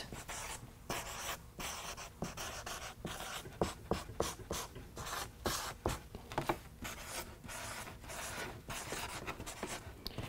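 Felt-tip marker writing on a paper flip-chart pad: a quiet run of short, quick scratching strokes with brief pauses between words.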